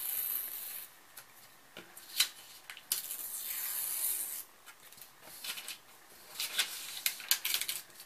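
Thin printed paper being torn along its edges by hand, in several short rips with crinkling in between: one near the start, a longer one in the middle and a quick run of small tears near the end.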